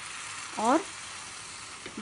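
Buttered sandwich sizzling steadily in a hot, preheated non-stick frying pan, its buttered side just set down to toast.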